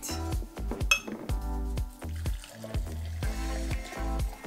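Background music with a steady low beat, with glassware clinking and knocking on the table: drinking glasses and glass measuring cups being picked up and set down. One clink about a second in rings briefly.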